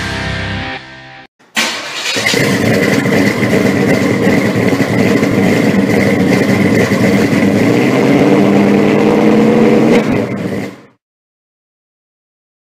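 Heavy guitar music ends about a second in. After a brief gap, a car engine starts and runs loudly for about nine seconds, its pitch rising a little later on, then cuts off suddenly.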